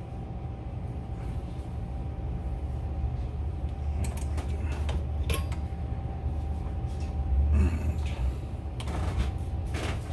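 Hands handling a conventional fishing reel and its braided line, giving a few sharp clicks and light rustles over a steady low hum with a faint constant tone.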